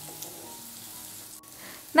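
Sliced shallots and ginger sizzling softly in hot oil in a black cooking pot as they are stirred with a spatula.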